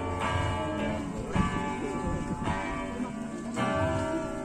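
Acoustic guitar playing a slow chord accompaniment, a new chord struck about once a second and left to ring.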